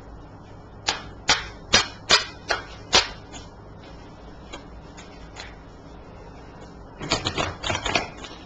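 A deck of tarot cards being shuffled and handled by hand: a series of sharp card clacks, about six in the first three seconds, then a quick flurry near the end.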